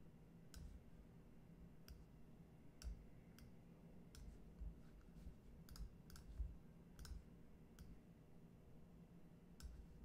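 Faint, irregular clicks and light knocks, about a dozen, over a steady low hum.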